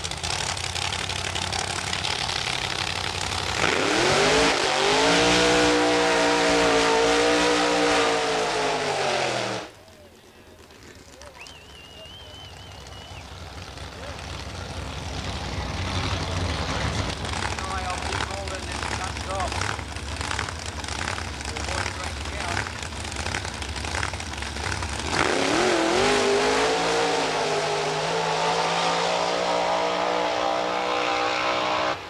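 Drag-racing doorslammer car engines at full throttle. One starts about three seconds in, its pitch sweeping up and settling, and cuts off suddenly near ten seconds. A quieter stretch of outdoor noise follows, and another engine run starts in the last five seconds.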